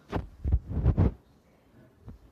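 Handling noise: a quick cluster of four low thumps and rustles in the first second or so, as a paper catalogue and the recording phone are handled.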